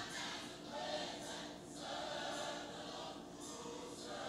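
Quiet background music: a choir singing long held notes, with short breaks between phrases.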